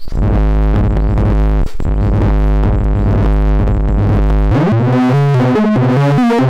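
SGR1806-20 analog percussion module played as a synth voice by a keyboard arpeggiator. It gives a loud, steady low buzzing tone with a brief break near two seconds, then about four and a half seconds in it sweeps upward into a quick run of changing notes.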